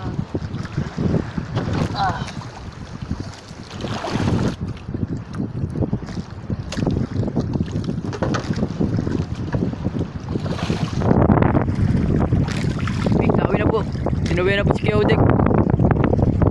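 Wind buffeting the microphone on an open fishing boat at night, a loud uneven rumble with no steady engine tone. A brief wavering, voice-like sound comes about two seconds in and again near the end.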